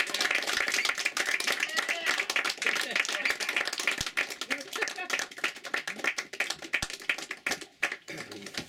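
Small crowd clapping in a small room, with voices and cheers mixed in; the clapping thins out and stops near the end.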